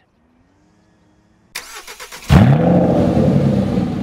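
A car engine starting: a brief run of starter cranking about a second and a half in, then the engine catches with a loud rising rev and settles into a steady run.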